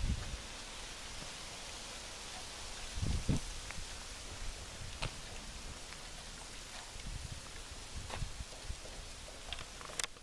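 Quiet outdoor background hiss with a few soft low thumps and light clicks from a handheld camera being carried around. The strongest thump comes about three seconds in.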